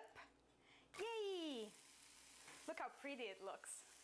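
Food sizzling in a frying pan on a stove, a faint steady hiss that starts about a second in. A voice with falling pitch sounds as the sizzle begins, and a few words are spoken over it near the end.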